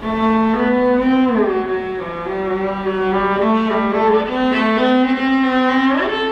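Solo cello played with the bow: a slow melodic line of held notes with vibrato. A new phrase starts firmly right at the beginning, and the pitch slides down between notes about a second in.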